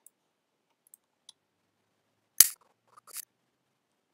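Sharp clicks from working a computer right by the microphone: a few faint ticks, then one loud click about two and a half seconds in and a softer clatter just after three seconds.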